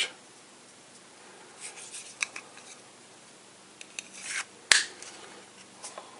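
Neck knife and its hard black sheath being handled, with quiet scraping and rubbing as the blade is worked into the sheath. A single sharp click comes a little over a second before the end.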